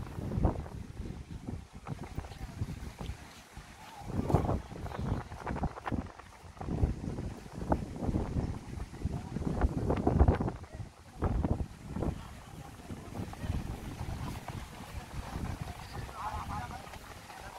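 Wind gusting on the microphone, a low rumble that swells and drops in uneven bursts.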